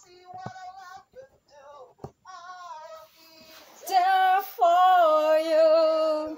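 Solo singing heard over an online video call: short sung phrases, then long, loud held notes with a wavering pitch from about four seconds in.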